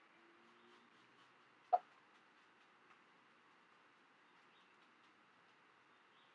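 Quiet room tone with a faint short squeak near the start and a single soft tick a little under two seconds in, from a paintbrush mixing paint on a plastic palette.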